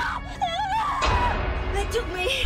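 A woman wailing and whimpering in distress, her voice wavering up and down, over tense horror-film music that thickens about a second in.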